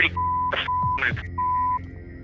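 Broadcast censor bleeps: a steady single-pitched beep sounds three times, each for less than half a second, covering swear words, with short snatches of a woman's voice between them.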